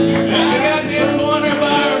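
Live acoustic blues: two acoustic guitars strumming, with a harmonica played into a microphone over them, its notes bending up and down.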